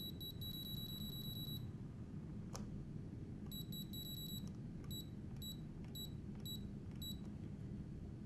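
Key beeps from a screwdriver's setting remote controller: a fast run of high, evenly pitched beeps as a button is held to step the value, a single sharp click, a second fast run, then five single beeps about half a second apart as the button is tapped.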